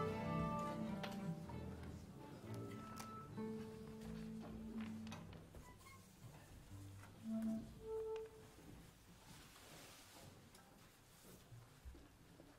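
Orchestra tuning winding down: the dense sound of many instruments sounding together fades within the first couple of seconds. A few single held notes from individual players follow, and the sound fades toward quiet near the end.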